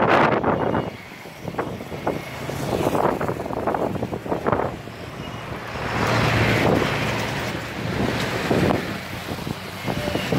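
Gusty wind buffeting the microphone ahead of a storm, surging and dropping in gusts, over the noise of road traffic passing.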